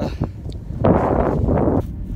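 A heavy exhale lasting about a second, starting about a second in, from a trekker worn out at high altitude, over a steady low rumble of wind buffeting the phone's microphone.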